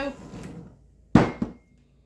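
A sharp knock a little over a second in, followed by a smaller hit and a brief faint ring: the hand mixer's metal wire beaters striking the glass mixing bowl.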